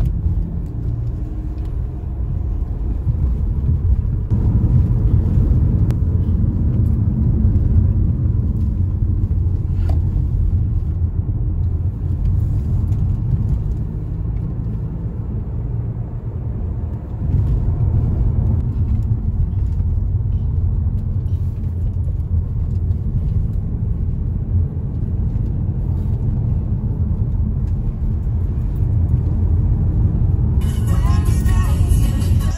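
Car on the move heard from inside the cabin: a steady low rumble of engine and road noise, getting louder about four seconds in, easing off briefly past the middle and then picking up again.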